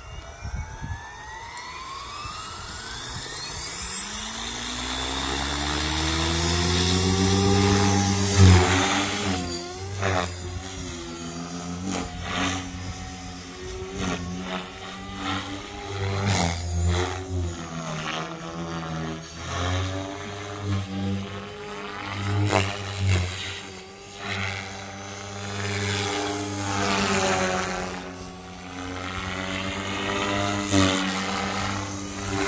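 Blade Fusion 550 electric RC helicopter spooling up: its motor and rotor whine rises in pitch and loudness over the first eight seconds or so. It then flies with a steady rotor hum that swells and fades as it moves, broken by several sudden loud surges as it manoeuvres.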